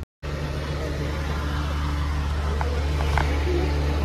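Truck engine heard from inside the cab while driving, a steady low drone that starts after a split-second gap.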